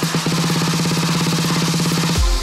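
Electro house build-up: a pitched electronic drum roll whose hits speed up about a quarter second in to a fast, almost continuous rattle.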